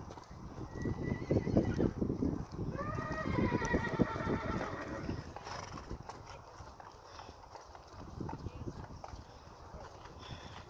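A horse whinnies about three seconds in, one call lasting a couple of seconds, over the muffled hoofbeats of a horse moving on sand footing.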